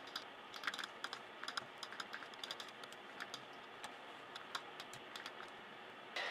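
Faint, irregular clicking of keys being tapped on a low-profile Apple computer keyboard, several clicks a second at times.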